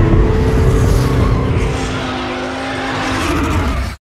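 Skoda Octavia A7 driving fast, a steady engine tone over loud road and tyre noise that eases off slightly, then cuts off abruptly at the end.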